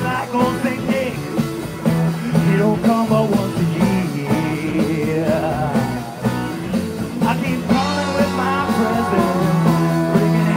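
Live rock and roll band playing between sung lines of the song, with electric guitar in the mix.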